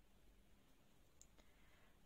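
Near silence: faint room tone with two faint small clicks a little over a second in.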